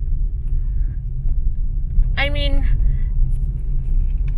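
Car running at low speed, heard from inside the cabin as a steady low rumble of engine and road noise.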